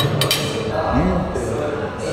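A knife and fork clinking against a ceramic dinner plate, a few sharp clinks near the start, over the murmur of voices in a restaurant.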